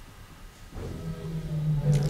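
Quiet room hum, then from about a second in a man's held, steady "uhh" through a microphone, growing louder toward the end.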